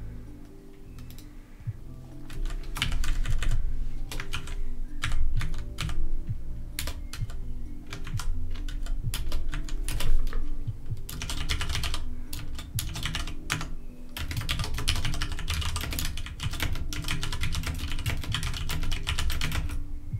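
Typing on a computer keyboard, starting about two seconds in and going in quick bursts with short pauses, with background music underneath.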